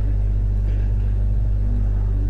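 Steady low electrical hum in the recording, a constant drone with no other distinct sound.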